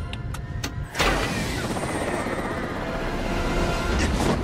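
Film sound effects in an aircraft: a few sharp clicks as a cockpit button is pressed, then about a second in a sudden loud rush of wind and aircraft engine noise that holds steady, with orchestral score underneath.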